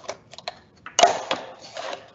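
Scissors snipping through a stiff paperboard chip can: a few small clicks, then a louder crunching cut about a second in.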